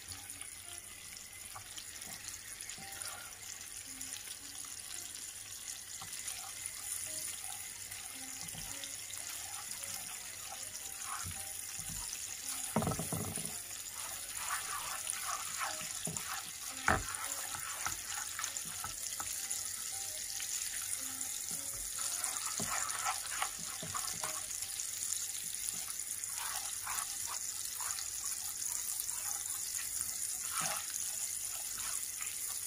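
Butter and sugar bubbling and sizzling in a nonstick frying pan as they cook toward caramel, stirred with a silicone spatula. The steady crackling hiss grows slightly louder, with a few knocks and scrapes of the spatula against the pan, the sharpest about halfway through.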